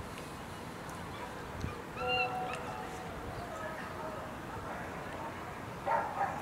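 Open-air background noise with a distant voice heard briefly about two seconds in and more faintly a little later.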